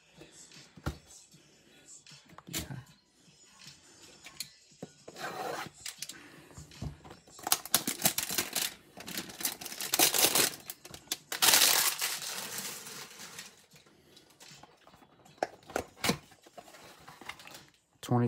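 A cardboard 2020 Donruss Optic hanger box being handled and torn open: scattered light taps and clicks, then a run of tearing and rustling bursts through the middle, the loudest about two-thirds of the way through.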